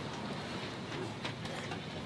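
Low steady background noise with a few faint clicks of a spatula stirring eggs in a frying pan on the stove.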